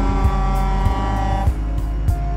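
Semi truck air horn sounding one long steady blast that cuts off about one and a half seconds in, over background music with a steady beat.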